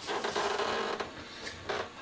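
Rustling and creaking of a person shifting and settling into a padded chair, with fabric and chair parts rubbing.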